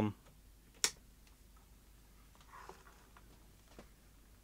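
One sharp click about a second in as the Silvercrest DAB kitchen radio is switched on at its front-panel button, followed by a much fainter click near the end.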